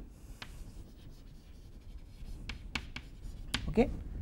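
Chalk writing on a blackboard: a faint scratching of chalk strokes, then several sharp chalk clicks in the second half.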